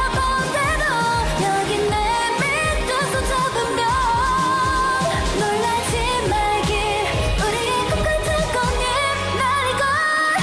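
K-pop girl group's female voices singing over an upbeat pop backing track with a steady drum beat.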